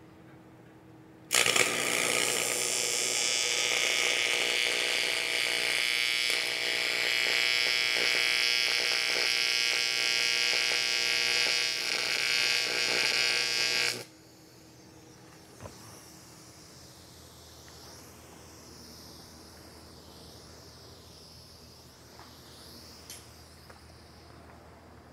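TIG welding arc buzzing steadily through one continuous weld. It strikes about a second in and cuts off suddenly about fourteen seconds in.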